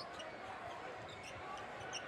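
Steady arena crowd murmur during live basketball play, with a few faint, short high squeaks from sneakers on the hardwood court.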